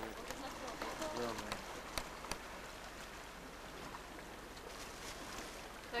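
Quiet outdoor seaside background: a steady low hiss, with faint voices in the first second and a half and two sharp clicks about two seconds in.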